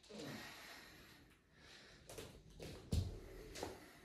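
A person breathing out hard, then scuffs and knocks of someone moving down onto a floor mat, with one loud thump about three seconds in.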